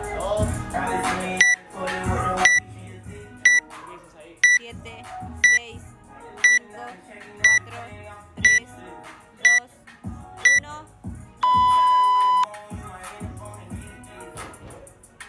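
Workout countdown timer beeping over background music: ten short high beeps a second apart, then one long, lower beep about a second long that signals the start of the workout.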